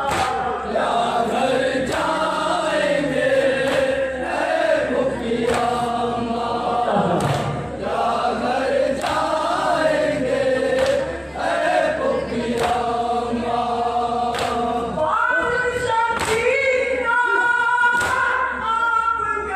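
A noha (Shia lament) sung by a male reciter through a microphone and loudspeakers, with other voices singing along in chorus. Sharp strikes every second or two run under the singing, the chest-beating (matam) that keeps time with the lament.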